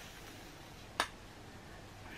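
A single short, sharp click about a second in, over quiet room tone.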